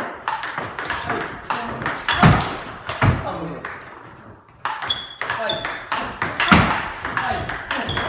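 Table tennis rally: the plastic ball clicking sharply off the rubber of the paddles and bouncing on the table in quick succession, hit hard in forehand drive and counter-drive exchanges. The rally stops about three and a half seconds in, and the clicks resume about a second later when play restarts.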